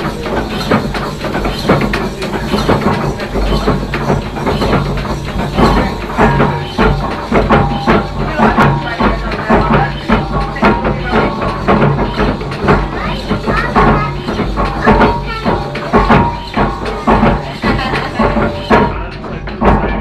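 Steam winch engine running, its crank and connecting rod turning with a continuous, irregular clatter of knocks, heard under music and people talking.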